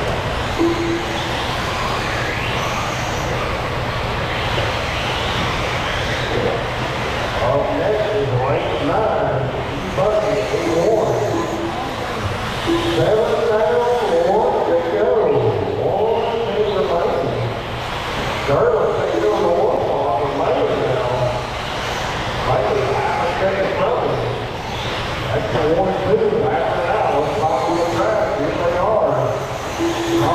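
Indistinct talking, from about seven seconds in, over the steady hum and hiss of an indoor dirt track where electric RC buggies are racing.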